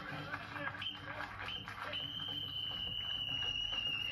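A high, steady signal tone marking the end of a timed round: two short blips about a second in, then a held note of about two seconds that cuts off suddenly, over crowd noise and talk.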